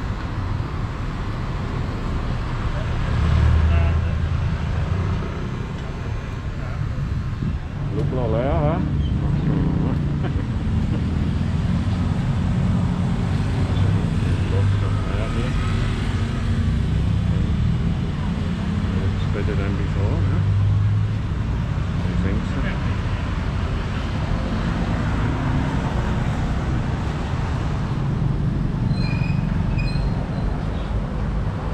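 Street ambience: a steady rumble of road traffic with people talking in the background, and a vehicle passing or revving about eight seconds in.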